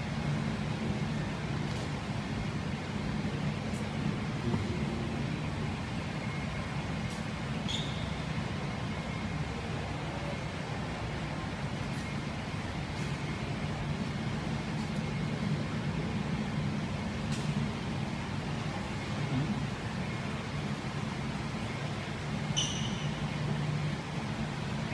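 Steady low machine hum with a few faint scattered clicks.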